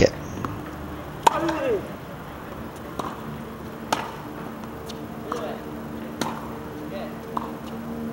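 Tennis balls struck by rackets and bouncing on a hard court during a slow rally: sharp pops about a second apart, the loudest about a second in and near four seconds, with faint distant voices.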